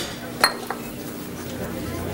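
Restaurant tableware: one clear, ringing clink about half a second in and a smaller click just after, over the steady background clatter and room noise of a busy diner.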